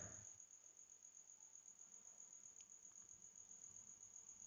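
Near silence: faint room tone with one steady high-pitched whine.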